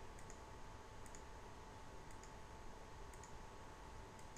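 A few faint computer mouse clicks, scattered and irregular, as frame-delay menu items are selected, over quiet room tone with a faint steady hum.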